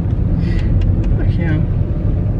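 Steady low rumble of a car's engine and tyres heard inside the cabin while driving, with a few faint clicks and a brief voice sound in the middle.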